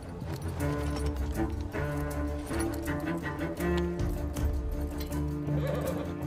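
Dramatic film score of low, sustained bowed strings (cello and double bass), with a run of sharp knocks throughout.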